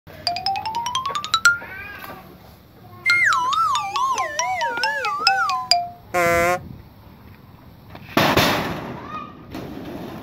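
A string of cartoon-style comedy sound effects: a quick rising run of plucked notes, then about three seconds in a falling, warbling tone that slides down in waves, a short buzz just after six seconds, and a noisy whoosh a little after eight seconds.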